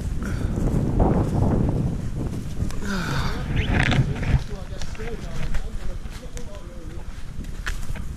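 Footsteps on frosty leaf litter with wind rumbling on the microphone, heaviest in the first few seconds.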